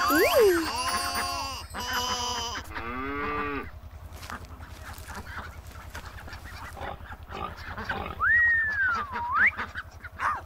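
Cartoon animal calls voicing plush toy sheep: four pitched calls in quick succession over the first few seconds, over a low steady beat. Near the end comes a sliding whistle-like tone that rises, falls and rises again.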